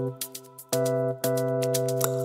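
Instrumental house music: held synthesizer chords with a regular high ticking beat. The music thins out and drops away in the first half-second, and the chords come back in under a second in.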